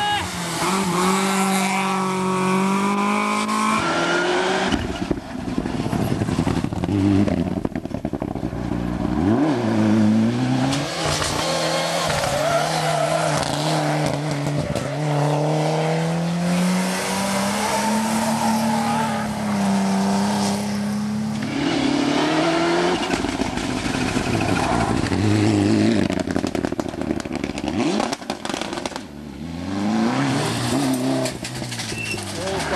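Rally cars driving hard through a tarmac stage one after another. Their engines rev up and drop back through gear changes, rising and falling in pitch as each car passes.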